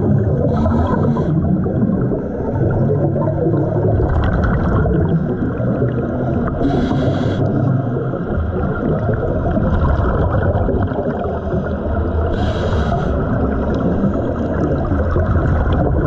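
Underwater sound picked up by a diving camera: a steady low rumble and gurgle of water, with a short hiss of bubbles every three seconds or so.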